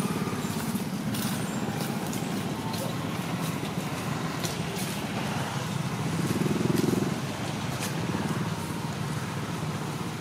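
Steady low rumble of a running motor vehicle engine, swelling briefly about six to seven seconds in.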